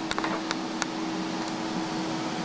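Two LED case fans on top of an acrylic PC case running, a steady rush of air with a steady hum under it. They are not yet slowed down by fan-control software. A few light clicks come in the first second.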